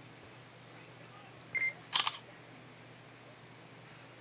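Samsung Galaxy S2 camera taking a picture: a short beep about a second and a half in, then the phone's shutter-click sound about half a second later.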